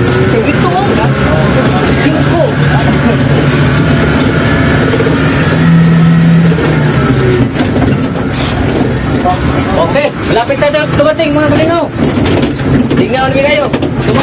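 Engine and road noise of a small passenger vehicle heard from inside its open-windowed rear cabin: a steady low drone that grows louder for about a second around six seconds in. Voices talk over it near the end.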